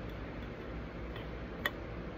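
A single short sharp click about one and a half seconds in, over a steady low hum of room noise.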